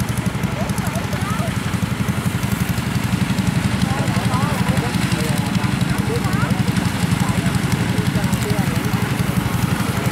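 Kubota rice combine harvester's diesel engine running steadily at close range, a fast, even low chug, with faint voices in the background.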